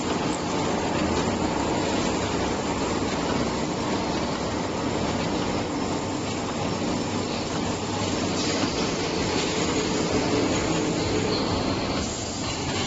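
Horizontal flow-wrapping (pillow-pack) machine running, a steady mechanical noise with no pauses or changes in level.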